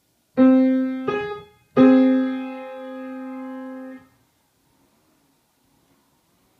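Yamaha acoustic piano playing a minor sixth: a lower note, then the higher note a moment later, then both struck together and held for about two seconds before being cut off together.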